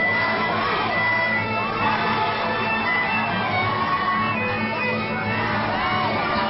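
Live music with a violin bowed on stage, over a cheering, shouting crowd.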